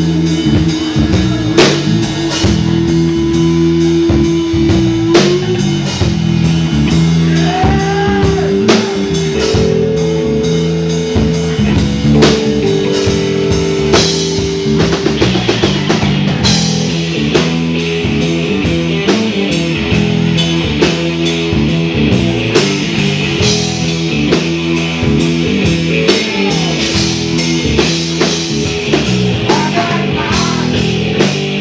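Live rock band playing an instrumental passage: an electric guitar through a Vox amp holds long notes and bends a couple of them, over bass guitar and a steady drum kit beat.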